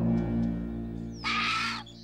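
Held low music chords, with a single harsh bird cry about half a second long a little over a second in.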